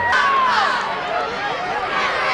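Football crowd in the stands, many voices talking and calling out at once.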